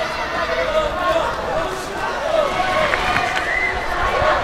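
Arena crowd: a steady murmur of many voices, with individual calls faintly rising over it.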